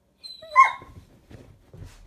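A single short, high-pitched animal cry about half a second in, rising in pitch and then held briefly.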